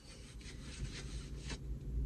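Soft scratchy rubbing, a hand rubbing against a cotton T-shirt, lasting about a second and a half.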